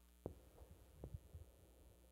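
Near silence: room tone with a steady low hum and a few faint, soft low thumps, one about a quarter second in and a couple about a second in.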